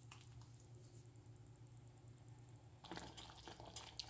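Near silence: a faint steady low hum with a few soft clicks, busier in the last second.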